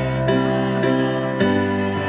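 Ensoniq MR-76 digital keyboard playing sustained chords over a bass line, the chords changing every half second or so and the bass note moving down about a second and a half in.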